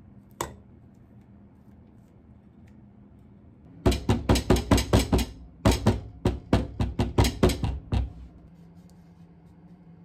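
Metal loaf pan full of cake batter rapped repeatedly down onto a folded cloth on the counter to level the batter: two quick runs of thuds, about six a second, lasting roughly four seconds in all. A single sharp clink sounds just before, near the start.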